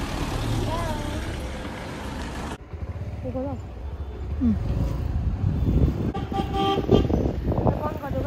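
Road traffic: a steady low engine and road rumble, with a vehicle horn sounding briefly about six seconds in.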